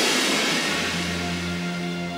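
Dramatic background score: a noisy crash-like swell fades away over the first second or so, over sustained held notes.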